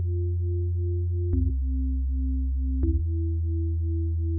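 Sparse, moody passage of an instrumental beat without drums: a deep sustained synth bass under a soft pulsing synth note. The note steps between two pitches about every second and a half, with a light click at each change.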